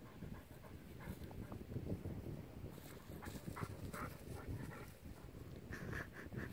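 Wind noise on the microphone, with several short breathy puffs like a large dog panting, coming in brief runs about a second in, around three to four seconds in, and near the end.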